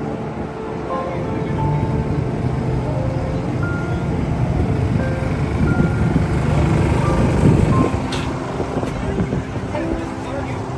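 Busy city street ambience: traffic noise and crowd voices, with music playing over it and a sharp click a little after eight seconds in.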